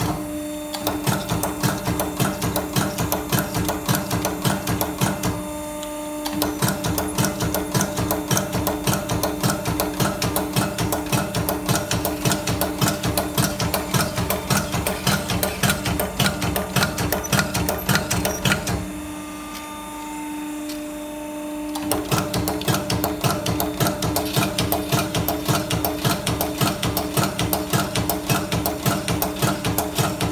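Automatic die cutting press in auto mode, punching a metal strip through a progressive jewellery die with rapid, evenly repeated strokes over a steady hum. The strokes stop briefly about five seconds in and again for about three seconds two-thirds of the way through, leaving only the hum.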